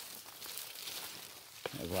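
Dry leaf litter and undergrowth rustling and crackling as someone walks through forest brush, with a man's voice starting near the end.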